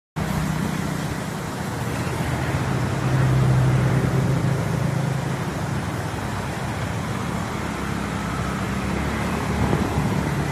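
Road traffic: a motor vehicle's engine hum, loudest about three to five seconds in, over a steady rushing noise.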